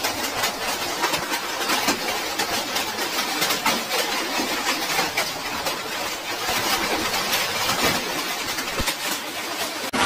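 Heavy hail pelting down: a dense, continuous clatter of hailstone impacts.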